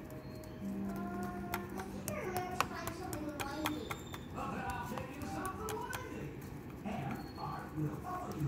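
Indistinct background voices with some music, low in the mix, with a steady low hum for a couple of seconds near the start and a few light clicks.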